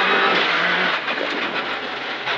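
Rally car's engine and gravel road noise heard inside the cabin, a steady running note that eases off slightly toward the end as the car slows after the stage finish.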